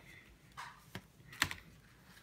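Handling noise of a paper and cardstock envelope flip book being turned over by hand: a few faint, sparse taps and clicks, the clearest about one and a half seconds in.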